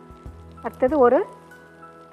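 Faint sizzle of small onions, garlic and whole spices frying in butter in a kadai, under a woman's single spoken word and faint background music.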